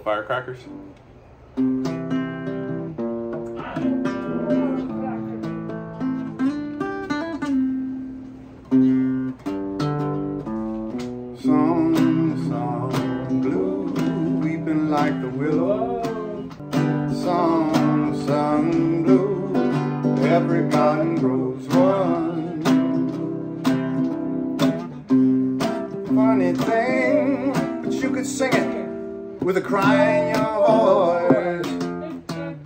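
Nylon-string cutaway classical guitar strummed in steady chords, starting about a second and a half in. From about twelve seconds in, a man's voice comes in over the guitar.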